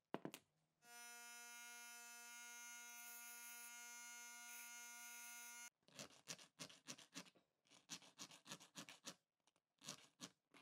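A bench grinder runs with a steady hum and a high grinding hiss as a strip of steel strapping is held to the wheel, stopping abruptly at about two thirds of the way through. Then a hand file scrapes across the steel blade in a quick run of short strokes, cutting teeth into it.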